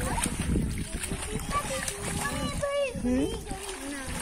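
Pond water splashing and sloshing around people wading and swimming, with voices calling over it.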